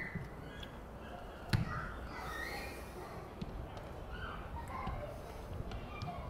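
Faint distant shouts and calls over low outdoor rumble, with one sharp knock about a second and a half in.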